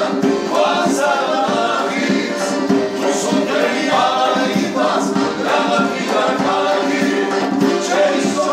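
Several men singing a folk song together, with accordion and acoustic guitar accompaniment.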